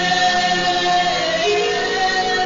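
A woman singing a gospel worship song through a microphone, holding one long note that falls in pitch about one and a half seconds in, over backing music.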